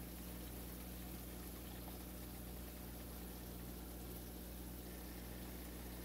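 Faint steady hiss with a low, even hum.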